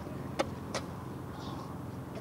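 Steady low outdoor rumble with two sharp clicks, less than half a second apart, near the start: spades being driven into rough soil.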